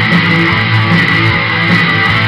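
Guitar playing in a rock song: chords ringing loud and steady.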